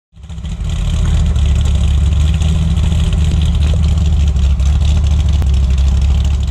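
Chevrolet Corvette C6 Z06's 7.0-litre LS7 V8 running steadily at idle through aftermarket long-tube headers, an off-road X-pipe and the stock exhaust with its baffles in place. It is a loud, deep exhaust note that fades in at the start.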